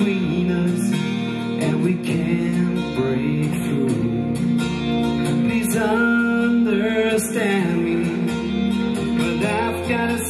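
Live song played by a duo: a strummed acoustic guitar over an electric bass line, with a man singing in long phrases at several points.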